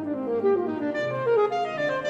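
Alto saxophone playing a quick running melody that climbs and falls, over a string orchestra accompaniment.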